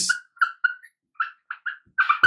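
A marker pen squeaking on a whiteboard as a word is written: a run of about six short, high squeaks with brief gaps between them.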